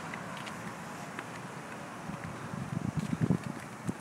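Night street ambience: a steady low hiss of distant traffic, with wind buffeting the phone's microphone in irregular low gusts during the last second and a half.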